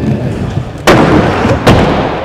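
Aggressive inline skates rolling over a wooden skatepark floor into a topside grind: a loud smack about a second in as the skate locks onto the ledge, scraping, then a second loud impact just before the end as it comes off.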